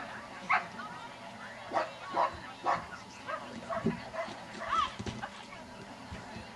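A dog barking and yipping repeatedly, about eight short, sharp barks spread irregularly across the few seconds.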